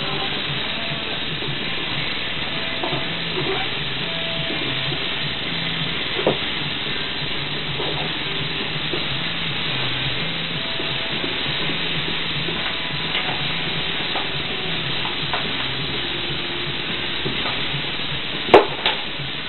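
A steady, even hiss with faint music underneath, and a single light knock about six seconds in.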